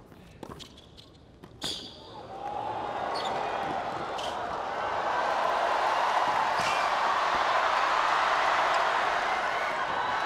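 Tennis ball struck back and forth with rackets in a rally, a sharp hit every second or two. A stadium crowd's noise rises from about two seconds in and keeps building.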